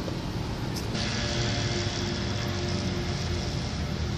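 Road traffic noise from a nearby street: a steady rumble of cars, with a hiss that rises about a second in.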